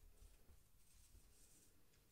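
Near silence, with faint soft rustling as yarn is worked between two cardboard pompom discs.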